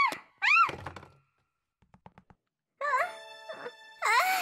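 A cartoon girl's voice crying out "Ah!" twice in quick succession, each cry rising then falling in pitch, as if straining while stuck. After a pause of about a second and a half with a few faint clicks, two more "Ah!" cries come near the end over light background music.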